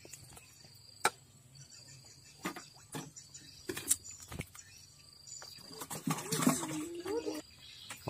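Faint handling sounds as a caught lembat is unhooked by hand: a few scattered sharp clicks and knocks of hook, line and fingers, over a faint steady high insect tone. Near the end comes a short low murmur that ends on a held note.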